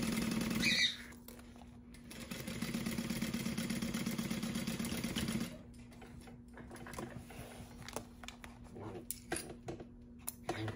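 Juki industrial sewing machine stitching vinyl. It runs in two bursts, a short one that stops about a second in and a longer run of about three seconds, each with a fast, even stitch rhythm. After that come quieter handling sounds and small clicks.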